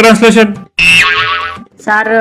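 A short cartoon sound effect of about a second, starting with a sharp high note that drops, comes after a line of speech ends.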